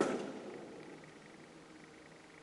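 A single sharp knock at the very start that dies away over about half a second, echoing off hard concrete walls. After it there is only faint room tone with a thin, steady high tone.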